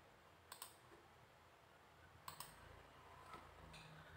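Two computer mouse clicks, each a quick double tick of button press and release, close to two seconds apart, with a couple of fainter ticks near the end over near silence.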